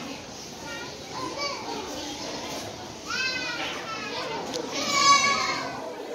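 Children's voices shouting and squealing over general crowd chatter, with two loud high-pitched cries, one about three seconds in and a louder one about five seconds in.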